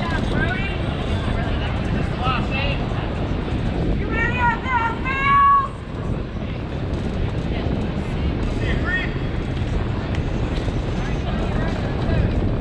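High-pitched shouts and calls ringing out across a youth baseball field, several short ones and one long, loud held call about five seconds in. Under them is a steady low rumble of wind on the microphone.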